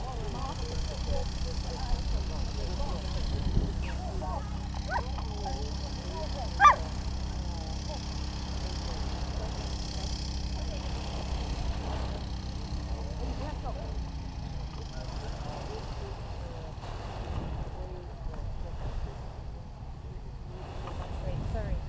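Distant, indistinct voices of people on an open field over a steady low rumble that fades out about fourteen seconds in. One short, loud, high-pitched call rises sharply about seven seconds in.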